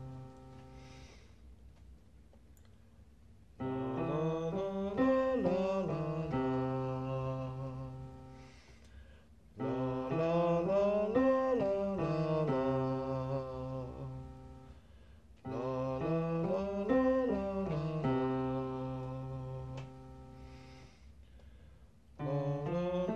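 A man singing vocal scale exercises softly along with a digital piano. There are three phrases, about six seconds apart, each a run of notes rising and falling over a held low note, fading away into a short pause before the next.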